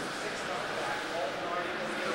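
Indistinct voices talking in a room, with no words clear enough to make out.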